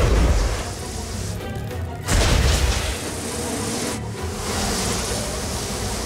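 Cartoon sound effects for a huge swarm of flies: a dense, noisy rush under music, with two heavy low booms, one at the start and one about two seconds in.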